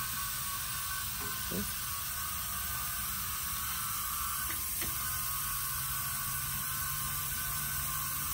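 Electrostatic powder-coat gun spraying powder with compressed air: a steady hiss with a steady mechanical hum and whine under it.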